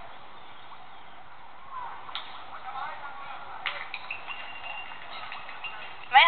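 Faint street commotion: distant voices and shouts over a noisy background, with a few sharp clicks or knocks about two and nearly four seconds in, and a thin steady high tone in the second half.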